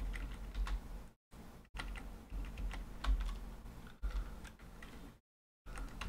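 Keys pressed on a computer keyboard: a scattering of separate clicks over a low hum, the sound dropping out completely twice.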